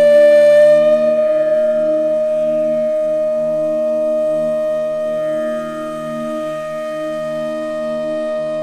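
Bansuri (Indian bamboo flute) holding one long, steady note that slowly softens, playing Raag Bihag in Hindustani classical style. Underneath it a lower drone pulses gently at an even pace.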